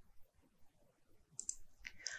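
Faint computer mouse clicks, a few in quick succession in the second half, over near silence.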